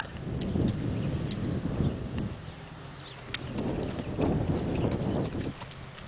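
A sorrel and white tobiano Paint mare's hooves beating a dull, even trot rhythm on a dirt arena. The beat drops away for a second or so midway, then comes back.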